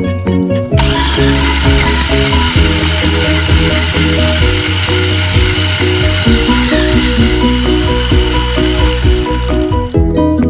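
Electric food processor running, its blade chopping whole Thai red chilies and garlic cloves down to a coarse paste: the motor starts about a second in, runs steadily with a whine, and stops just before the end. Background music plays under it.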